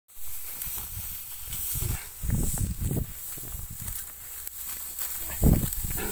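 Dry wheat stalks rustling as ripe wheat is cut and gathered by hand, with a steady high hiss and a few sharp clicks. Low thumps on the phone microphone come about two to three seconds in and again near the end.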